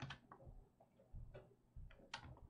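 Near silence with a few faint, separate clicks of a computer mouse button, the strongest right at the start, while a shape is being drawn with the mouse.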